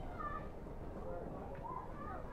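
Voices of other people in the background: chatter and short high-pitched calls over a low outdoor rumble.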